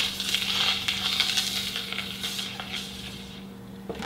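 Plastic flying disc spinning on a still fingertip in a rim delay, the inside of the rim rubbing on the fingernail with a dry hiss that fades as the spin dies away. The disc is pivoting around the finger rather than holding still.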